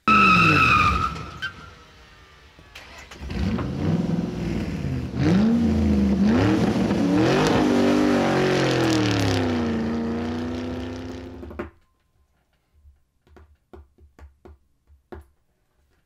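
A high squeal for about a second and a half, then a car engine revving, its pitch climbing and falling several times before it cuts off suddenly about three-quarters of the way through. Only faint small clicks follow.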